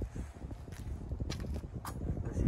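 Footsteps on the dirt and gravel ground of a scrap yard, irregular taps over a low rumble, with a few sharper clicks in the second half.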